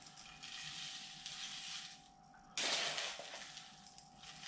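Granular bonsai soil being handled with a plastic scoop: a soft gritty rustle as it is scooped from an enamel bowl, then a sudden louder rush of grains poured into a bonsai pot about two and a half seconds in, trailing off.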